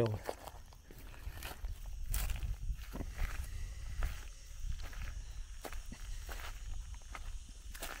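Footsteps of a person walking over dry grass and bare earth, an uneven series of soft scuffs and crunches, with a low rumble underneath.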